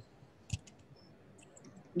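Low room tone with a single sharp click about half a second in, then a few faint ticks near the end.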